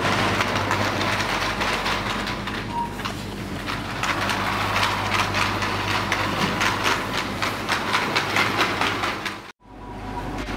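Rolling rattle of a wheeled plastic shopping basket pulled across a tiled floor, a dense run of small clicks over a steady low hum. The sound drops out briefly near the end.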